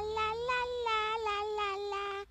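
A baby character's high, nasal voice singing a wordless tune, held near one high pitch with small steps up and down and brief breaks, loud enough to disturb someone studying.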